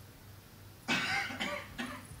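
A person coughing: a longer burst about a second in, then a short one near the end.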